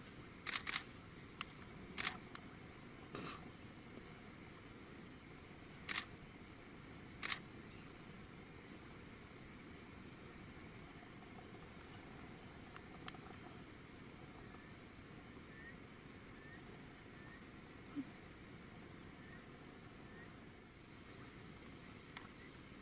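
Camera shutter clicks, about seven in the first seven seconds, some in quick pairs, over a faint steady night background. In the later part a faint high chirp repeats about once a second.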